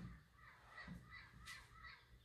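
Faint bird calling in the distance, several short calls in quick succession over a near-silent room.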